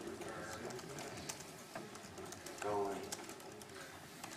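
Faint room noise with scattered small clicks, and a brief murmured voice about three seconds in.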